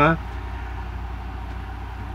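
Steady low machine hum with a fine, even pulse to it, running unchanged through a pause in talk.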